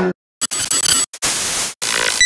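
Analog TV static sound effect: a hiss in choppy bursts broken by short silences, starting about half a second in.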